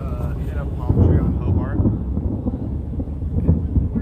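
Thunder rumbling during a lightning storm, swelling about a second in and rolling on in uneven surges.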